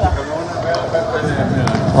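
Background talk: voices speaking softly under the general chatter of a busy hall.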